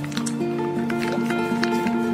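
Background music of evenly repeated notes, with light crinkling of the foil seal being peeled off a Kinder Joy egg half.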